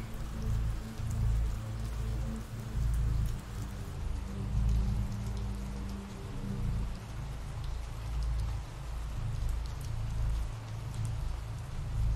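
Steady ambient rain falling, with a low rumbling drone underneath and a low held tone that stops about halfway through.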